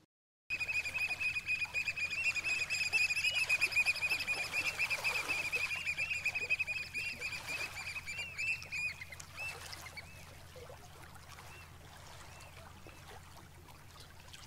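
A dense chorus of high, rapidly repeated bird chirps that begins about half a second in and thins out after about nine seconds, over a low steady hum.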